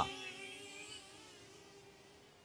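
Faint, steady buzz of a hovering DJI Flip drone's propellers, fading away over the first second into near silence.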